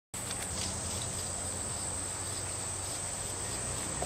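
Steady outdoor ambience: a continuous high-pitched insect chorus over a faint low hum, with no sudden sounds.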